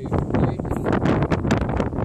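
Wind buffeting a phone's microphone in an uneven rumble, with scraping and knocking from fingers handling the phone.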